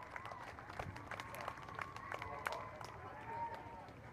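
Faint background voices of people talking, with scattered sharp clicks and knocks through it.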